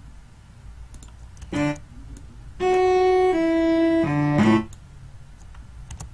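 Sampled cello part playing back from a software instrument: one short note about a second and a half in, then two long held notes, the second slightly lower, and two shorter notes to close the phrase.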